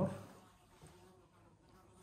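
A man's spoken word trails off, then quiet room tone with a faint steady hum.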